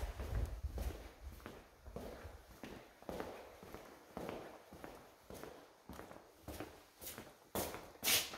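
Footsteps on a ceramic tile floor, faint and even, about two steps a second.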